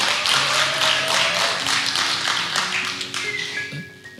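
Audience applauding over soft background music with held notes; the clapping thins and fades out toward the end.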